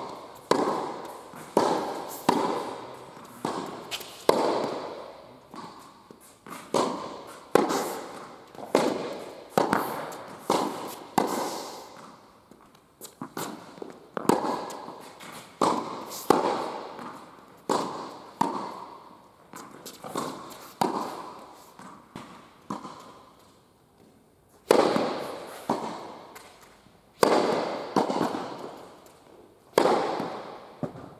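Tennis balls struck by rackets and bouncing during a rally on an indoor court, each hit sharp and echoing in the hall, about one or two a second. There is a brief lull a little over two-thirds of the way in before the hits resume.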